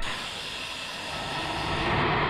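Film soundtrack effect: a steady rushing hiss with faint held tones in it, starting abruptly and swelling slightly toward the end.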